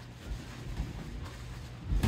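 Quiet gym room sound with a few soft, dull low thumps.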